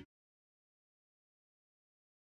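Complete silence: the sound track cuts out abruptly at the start and nothing at all is heard.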